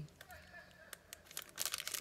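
Clear plastic packaging crinkling in the hands as rolls of washi tape are handled: a scatter of light crackles, thickest near the end.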